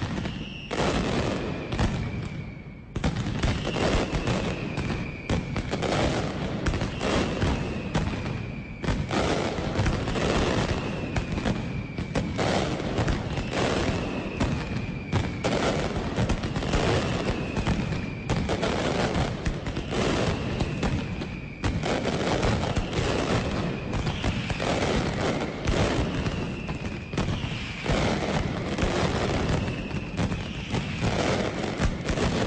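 Mascletà: a dense, continuous barrage of ground-level gunpowder firecrackers, a rapid rattle of bangs with heavier booms mixed in, dipping briefly about three seconds in before running on unbroken.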